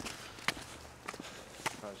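Footsteps on snowy ground while walking, with two sharp crunching steps about a second apart over a low steady rumble.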